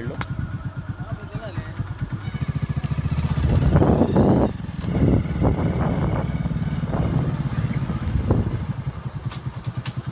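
Motorcycle engine running steadily as the bike rides along a village lane, with a high steady whine joining in near the end.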